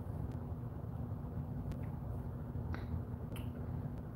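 Quiet steady room hum with a few faint light clicks and ticks from handling a liquid concealer tube and its applicator wand during swatching.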